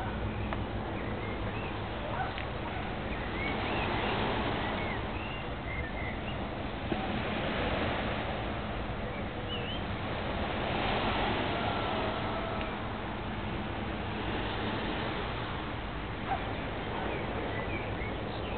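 Outdoor garden ambience: a steady background hiss and low hum that swells and fades every few seconds, with scattered short bird chirps.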